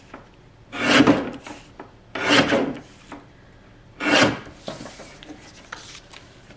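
X-ACTO guillotine paper cutter's blade shearing through sheets of paper labels: three cuts, each about half a second long, roughly a second and a half apart.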